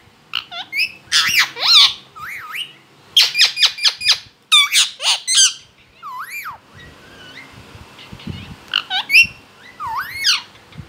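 Rose-ringed (Indian ringneck) parakeet giving a rapid run of short squawks and chirps, each sweeping up and then down in pitch, in quick clusters through the first six seconds, then quieter for a few seconds before a couple more calls near the end.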